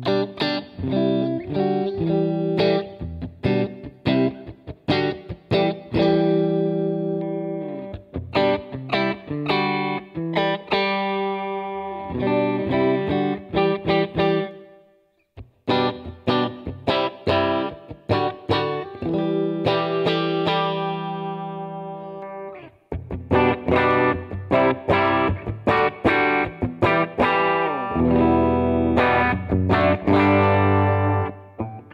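Electric guitar played clean through a Line 6 Helix modeller's Placater amp model and A30 cab, on the neck pickup: picked chords and single notes ring out. The playing stops briefly about halfway through and again for a moment a little later.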